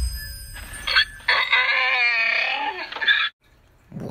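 Animal cry sound effect: a short call about a second in, then a longer wavering call lasting nearly two seconds, over the fading low rumble of the intro.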